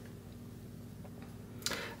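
Quiet room tone with a faint low hum, then a short intake of breath near the end.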